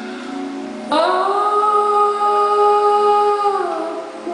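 A high male voice in countertenor range, singing live into a microphone, holds one long note from about a second in that tails off and drops near the end.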